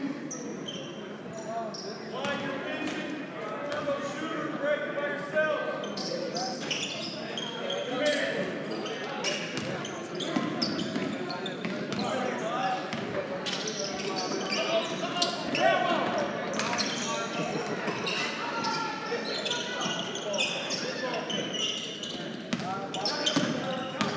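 A basketball being dribbled on a hardwood gym floor during live play, with a steady hubbub of shouting players and spectators echoing in the gym.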